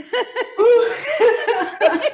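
Women laughing over a video call, a run of quick, pitched ha-ha bursts, about four a second.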